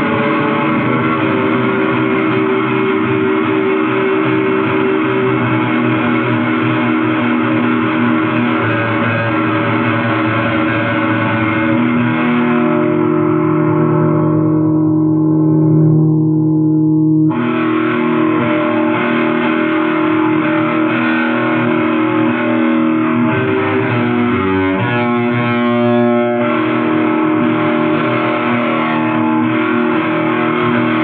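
Black metal from a 1995 demo tape, carried by distorted electric guitar, with no singing. About twelve seconds in, the upper range fades away, leaving a held low note for a few seconds. The full band then comes back abruptly.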